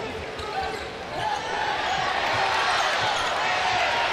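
A basketball being dribbled on a hardwood court, short irregular thumps over the steady background noise of an arena crowd.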